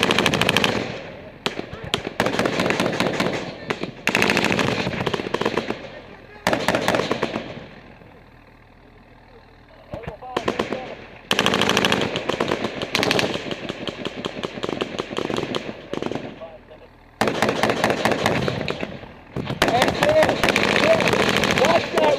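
Close, loud automatic gunfire in long, rapid bursts. The bursts are split by short pauses, with a lull about eight seconds in before the firing resumes.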